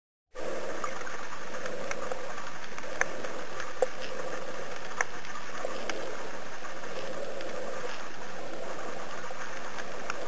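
Underwater water noise picked up by a snorkeler's camera: a steady rushing hiss that cuts in abruptly just after the start, with a few sharp clicks scattered through it.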